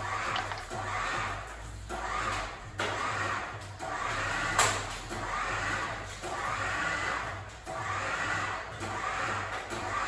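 Hydraulic loading system of a structural test rig working hard as it loads a wind turbine blade section in four-point bending. It makes a pulsing hum that swells and fades about once a second over a steady low drone, with one sharp click about halfway through.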